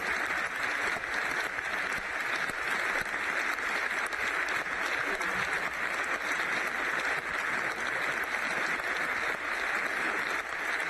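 A large crowd applauding steadily, many hands clapping together without a break.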